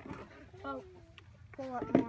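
Children's voices only: short bits of chatter and calls, getting louder just before the end.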